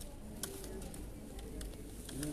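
Computer keyboard being typed on: irregular light key clicks, several a second, over a faint low murmur.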